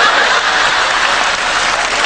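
Audience applauding, a dense, steady clapping that fills the hall.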